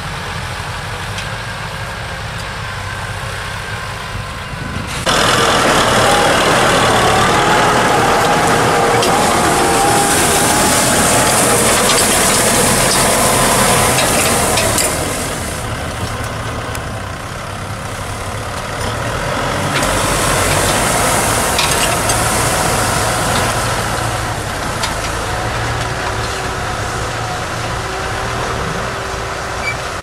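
Kubota M6040 tractor four-cylinder diesel engine running steadily under load while pulling a disc plow. About five seconds in, a loud rushing noise suddenly joins the engine. It eases around fifteen seconds and swells again around twenty.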